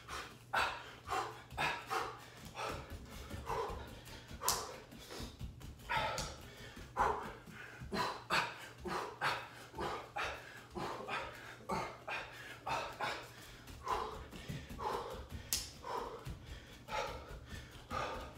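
A man's short, sharp breaths and grunts, about two a second, in rhythm with punching and quick footwork during a boxing drill.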